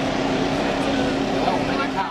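A steady engine drone with a constant low hum, with people talking faintly underneath.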